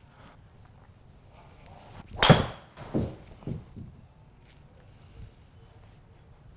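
A driver striking a Titleist RCT golf ball: one sharp, loud crack a little over two seconds in. A few softer thumps follow within the next second and a half.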